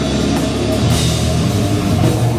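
Live heavy metal band playing loud and steady: a drum kit with cymbals over distorted electric guitar.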